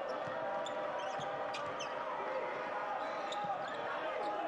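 A basketball being dribbled on a hardwood court, with short sneaker squeaks and faint voices of players and the bench carrying around a mostly empty arena.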